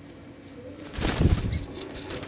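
Blue jay's wings flapping as it takes off from its perch in a cage: a short, loud flurry of wingbeats about a second in.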